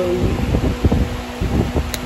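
Steady low rumble with a faint hum and a few soft bumps: background noise and handling on a handheld phone's microphone.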